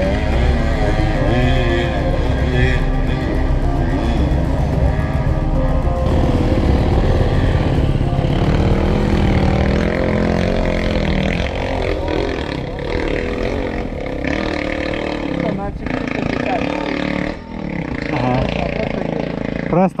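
Enduro dirt-bike engines running and revving on a steep wooded climb, with a steady low engine rumble under rising and falling revs.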